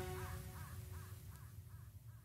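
The end of the music dies away, leaving faint caw-like calls repeated evenly about two and a half times a second and slowly fading.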